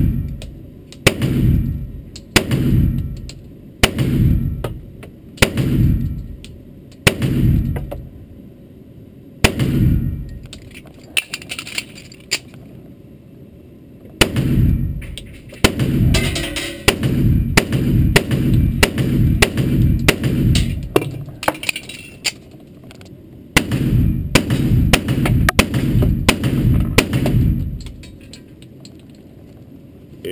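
A 1911 pistol, an STI Spartan, firing a course of fire in an indoor range, each shot echoing off the walls. Single shots come about every second and a half at first, then faster strings of shots with short pauses between them, stopping shortly before the end.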